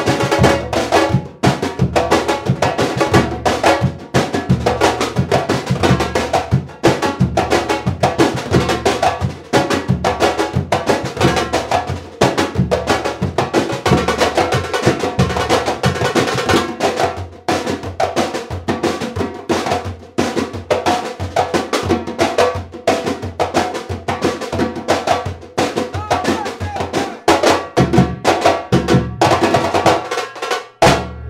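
Brazilian percussion ensemble playing a samba-reggae groove together: hand-played timbals over a repeating low bass-drum pulse and stick-struck drums, a steady, dense rhythm.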